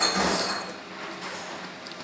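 A sharp clatter of dishes and cutlery right at the start, ringing away over about half a second, then only quiet room noise.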